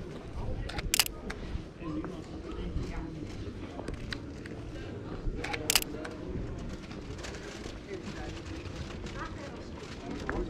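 Canon 5D Mark IV DSLR shutter firing twice, each a sharp quick double click, about a second in and again about five seconds later. Underneath is steady street ambience with people talking.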